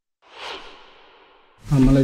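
A man's audible breath into a close microphone: a short, sigh-like rush of air that swells quickly and fades over about a second. Speech begins near the end.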